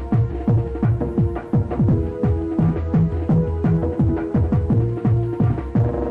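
Happy hardcore dance music from a DJ set: a fast, even kick-drum beat, nearly three kicks a second, under sustained synth chords.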